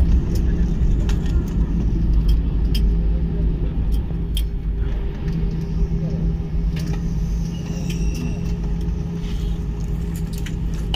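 Airliner cabin during the landing rollout: a steady low rumble from the wheels and engines as the jet slows on the runway, under a scatter of sharp clicks and rattles from cabin fittings.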